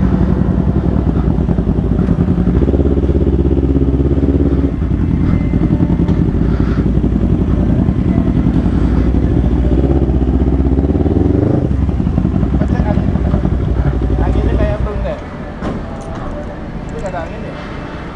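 Kawasaki Z250 parallel-twin engine running at low revs as the bike rolls slowly, with a brief rise in revs about eleven seconds in. Near the end it drops to a quieter idle as the bike comes to a stop.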